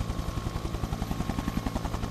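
Sound-effects playback from a mixing session: a rapid, even chopping pulse over a low steady hum, with no break.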